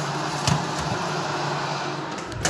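Steady fan noise with a low hum, from the kitchen's ventilation or the convection oven's fan, and a single metallic knock about half a second in as a steel baking tray is pushed onto the oven rack.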